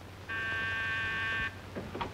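Electric door buzzer sounding once: a steady buzz of a little over a second that starts and stops abruptly.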